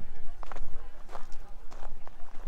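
Footsteps crunching on a gravel track, three even steps about two-thirds of a second apart, over a steady low rumble.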